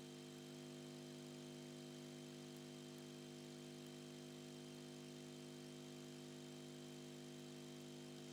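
Near silence: a steady electrical hum of several even tones with faint hiss, from the microphone and recording system, unchanged throughout.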